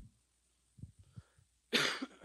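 A man coughing into his fist near the end, one short harsh cough, after a few faint low knocks about a second in.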